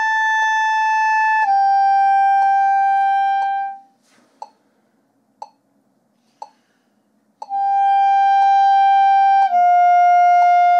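Clarinet playing overtones: high notes fingered in the low register without the register key and started with an air attack, no tongue, in slurred falling pairs. Each note is held about two seconds and steps down a tone into the next. After a rest of about three seconds a second falling pair begins, while a metronome clicks once a second throughout.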